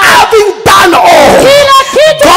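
A man laughing loudly in long, high-pitched peals, with a short break about half a second in.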